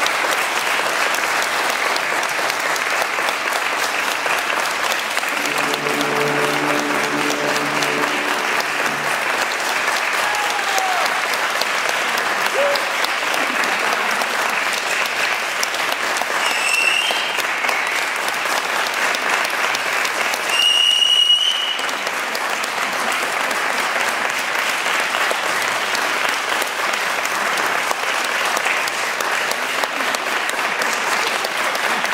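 Audience applauding steadily. A few held low notes sound about six seconds in, and two short high-pitched tones come a little past the middle.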